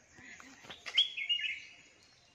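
A bird's call: one short whistled call of about half a second, about a second in, stepping down in pitch. A few sharp clicks come just before it.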